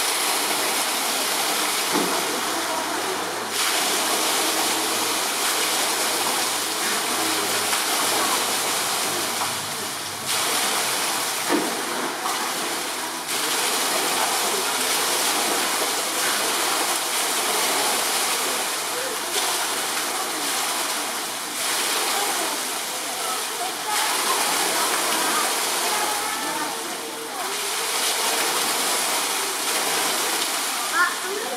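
Steady rushing of running water, with faint voices murmuring in the distance.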